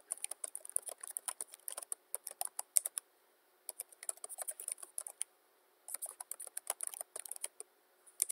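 Typing on a computer keyboard: quick runs of keystrokes, broken by two short pauses partway through.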